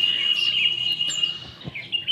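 Small birds chirping: one long steady high note for about the first second and a half, then a few short chirps.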